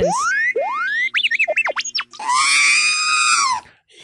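Electronic sound-effect stinger: two rising sweeps and a quick run of up-and-down warbling beeps over a low steady hum, then about a second and a half of harsh, buzzy, static-filled tone that fades out near the end.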